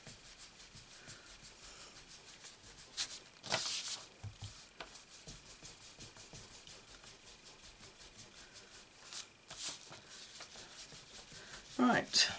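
Ink blending brush rubbed in quick repeated strokes over cardstock: a soft, steady brushing scrub, with a couple of louder scuffs about three and a half and nine and a half seconds in.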